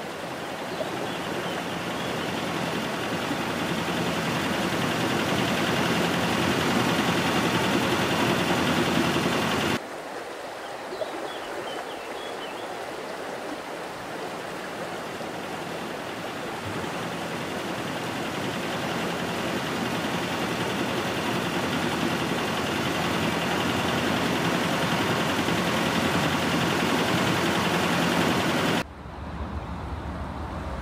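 Steady rushing noise of river water that swells over several seconds, cuts off abruptly about ten seconds in and again near the end, then builds again.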